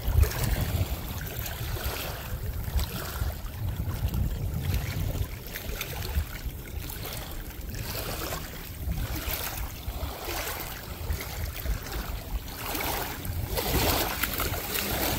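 Wind buffeting the microphone in uneven gusts, over the steady rush of small waves lapping on a choppy lake.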